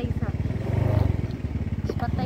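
Small motorcycle engine running as it rides slowly along a road, its low, even firing pulses swelling briefly about a second in as the throttle opens.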